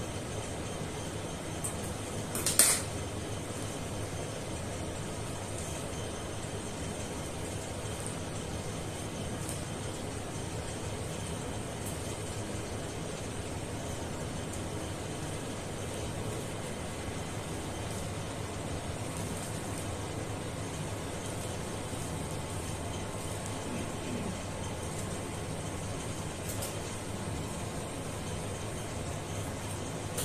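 Steady low room hum, with one sharp click about two and a half seconds in and a few faint ticks, like surgical instruments being handled during suturing.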